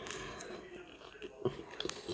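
A person biting into a piece of bread and chewing with the mouth, quietly, with a few soft mouth clicks in the second half.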